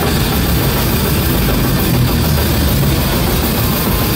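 Hardcore punk band playing live: distorted electric guitars, bass and drum kit, loud and dense without a break.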